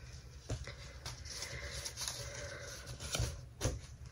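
Soft rustling of a 32-count Belfast linen cross-stitch piece being handled and set down, with a few light knocks, the loudest near the end.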